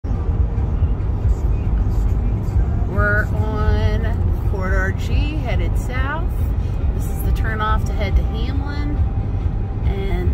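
Steady low rumble of a car's tyres and engine heard inside the cabin at highway speed, with music carrying a sung voice over it from about three seconds in, the voice holding and sliding between notes.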